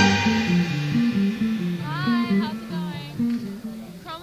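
A band's music drops to a quieter passage of short, stepping plucked low notes from a bass or guitar. About two seconds in, a high melodic line slides up and down in pitch, and the music grows quieter toward the end.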